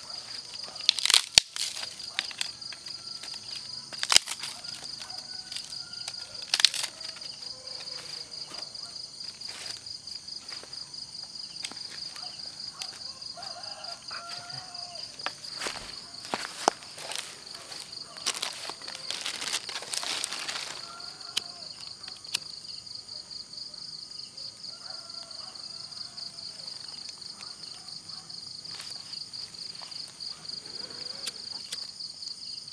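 A steady, high, pulsing trill of night insects, with crackling rustles of dry palm fronds and grass being handled. The crackles are sharpest about one, four and seven seconds in, and a longer rustle comes around twenty seconds in.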